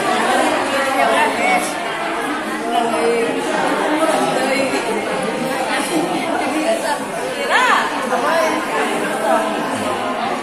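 Many people talking at once in a large hall: a steady crowd chatter of overlapping conversations, with one voice rising and falling in pitch briefly about three quarters of the way through.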